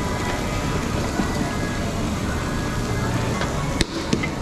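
Steady sizzling hiss from a tabletop Korean BBQ grill with background music and restaurant chatter, broken off abruptly by a sharp click just before the end.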